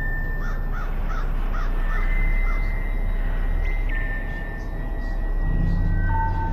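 A bird gives a quick run of about six short calls in the first two and a half seconds, over a steady low rumble and a faint, steady high whine.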